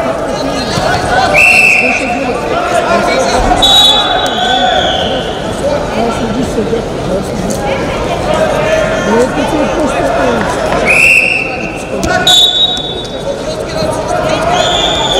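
Voices echoing in a large sports hall, with four short high squeaks of wrestling shoes on the mat as the wrestlers grip and push on their feet.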